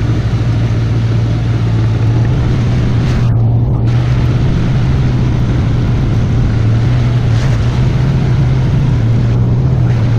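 Side-by-side UTV's engine running steadily while driving, under a steady rushing noise of wind and tyres; the rushing briefly drops away about three seconds in and again near the end.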